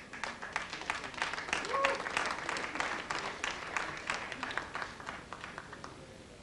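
Concert audience applauding, dense hand claps that thin out and fade toward the end, with a short shout from the crowd about two seconds in.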